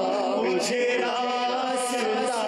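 A male voice chanting a devotional naat without instruments, in long held notes that waver with vibrato.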